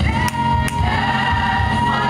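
Gospel choir music with singers holding one long note over a steady bass line.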